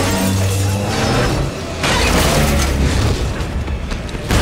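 Dramatic film score with low held tones, overlaid by action sound effects, with a crash of shattering debris about two seconds in.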